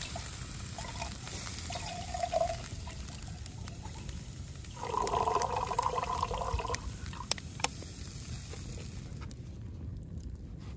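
A thin stream of water pours into a stainless-steel pitcher. The splashing in the metal swells and is loudest for about two seconds midway. Two sharp clicks come near the end.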